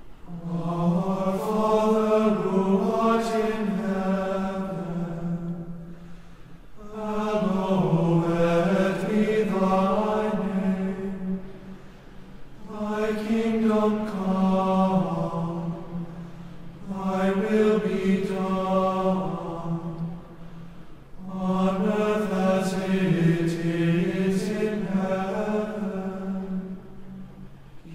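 A voice chanting a liturgical prayer on a nearly level reciting tone, in five phrases of about four to five seconds with short breaks for breath between them.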